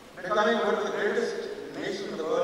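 A man's voice starting a moment in, with a short break just before the end.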